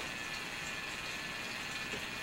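Steady background hiss with a few faint steady tones; no distinct sound event.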